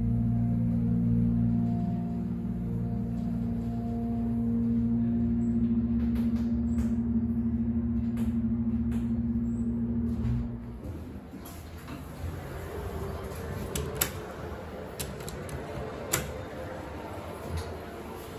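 Hydraulic scenic elevator running as the car travels up: a steady low hum with a held tone, which cuts off suddenly about ten seconds in as the car stops. After that comes quieter open background noise with a few sharp clicks.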